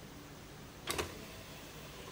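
Two sharp clicks close together about a second in, from the small motor-driven mechanism of a model door as it starts to swing open, over faint room hiss.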